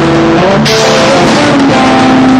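A rock band playing live: electric guitar and bass holding notes that step through a melodic line over a drum kit, with a cymbal wash coming in just over half a second in.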